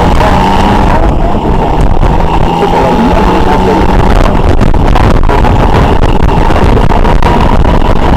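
Motorcycle being ridden, its engine and wind noise loud and steady.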